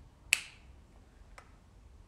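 A single sharp click about a third of a second in, followed by a much fainter tick about a second later, over a low steady background hum.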